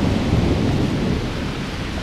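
Heavy rain pouring down on a flooded street, a steady hiss with a low rumble underneath.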